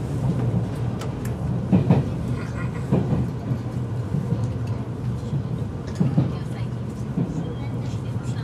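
Running noise heard inside an Odakyu EXE 30000-series electric train under way: a steady low hum with a few sharper knocks from the wheels and track.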